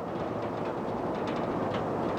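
Steady outdoor background noise, an even rumble and hiss with no clear separate events.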